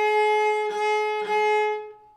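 Cello played with the bow: one high note held steady in pitch, broken briefly twice, then fading out near the end.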